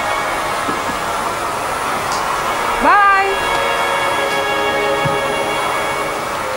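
Vacuum cleaner running steadily, with a brief rise in pitch about three seconds in.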